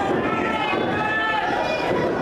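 Spectators' voices, several people talking at once around the ring.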